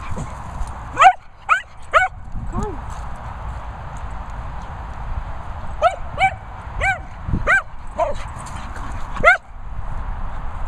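A dog barking excitedly in play: short, high-pitched barks, a burst of four about a second in, then a pause, then six more from about six seconds in, the first bark the loudest.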